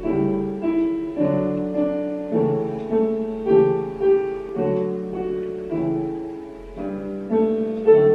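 Piano playing an instrumental introduction to a children's song, with notes struck at a steady pace of about one every half second, each fading after it sounds.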